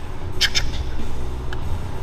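Steady low hum of a gym's background noise, with one short soft click or breath about half a second in.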